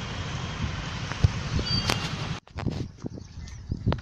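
Steady low outdoor rumble with no clear single source, cut off suddenly a little past halfway; after that it is quieter, with a few scattered clicks.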